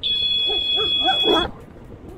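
A loud, steady, high-pitched tone sounds for about a second and a half and cuts off suddenly, while a dog barks about four times.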